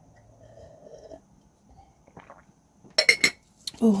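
Quiet sipping and swallowing of a drink, then a short loud clatter of a cup or glass being handled and set down about three seconds in.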